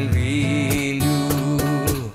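Acoustic band playing live: a male singer holds a wavering note over acoustic guitar, with a few cajon strikes.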